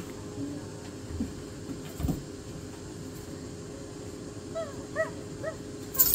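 Dog whining softly, four short high whines near the end. Earlier there are a couple of faint dull knocks.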